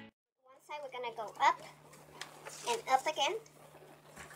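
A voice talking, starting about half a second in after a brief silence, over a faint steady low hum.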